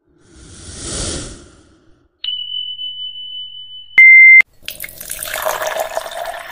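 Like-and-subscribe animation sound effects: a whoosh that swells and fades, a steady high beep, then a short, louder beep between two clicks, followed by a rushing, watery-sounding noise.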